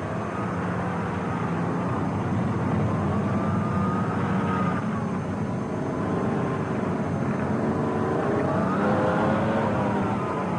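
Diesel engine of a tracked military vehicle running, its whine drifting slowly up and down in pitch.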